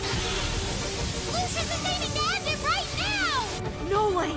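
Anime battle soundtrack: background music under a dense rushing effect for the spinning-top clash, with several short, arching vocal cries about halfway through. The rushing cuts off abruptly just before the end.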